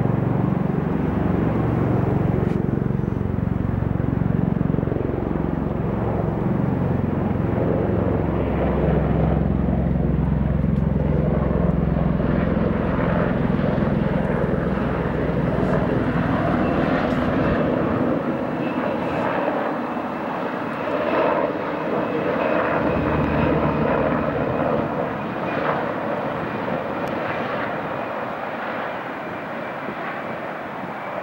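Military helicopters and an MV-22 Osprey tiltrotor flying past low overhead: a loud rotor and turbine drone whose low pitch slides down as they pass. The deep part drops away about eighteen seconds in, leaving a thinner, fading rotor sound.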